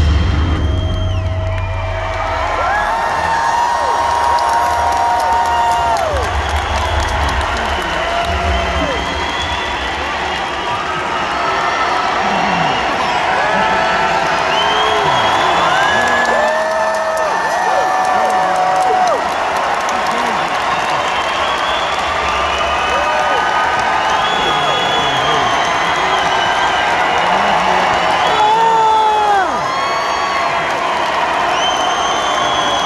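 Arena crowd cheering and whooping, many voices shouting close by over a steady din. A deep low rumble sounds at the start and fades within the first few seconds.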